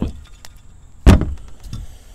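Old, worn-out rubber motor mounts clunking on a hard plastic lid as they are handled, with one sharp knock about a second in and a few lighter clicks. The rubber in the mounts is broken and the mounts are loose and wobbly.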